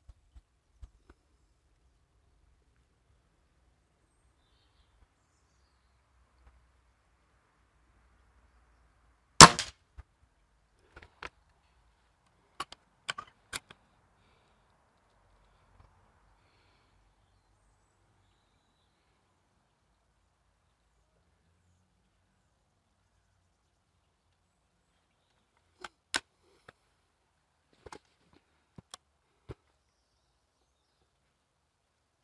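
A break-barrel spring-piston air rifle fires once, a single sharp crack about nine seconds in. Small clicks and knocks follow as the barrel is broken open to cock and load it. Near the end there is a sharper snap and a few more handling clicks.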